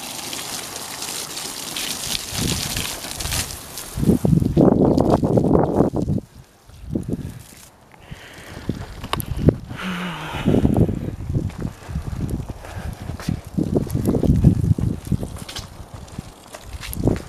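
Water from a garden hose splashing onto soil-filled pots and a concrete walk for the first few seconds. After that, wind buffets the microphone in irregular gusts.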